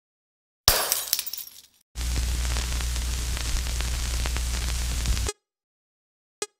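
A sudden loud crash, about a second in, that rattles away over about a second. Then a steady hiss with a low hum and scattered crackles, like the surface noise of old film under a countdown leader, cuts off suddenly near the end.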